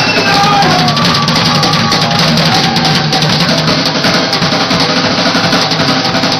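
Punk rock band playing live and loud, with the drum kit close and dominant: steady drum beats and cymbals, with electric guitars behind.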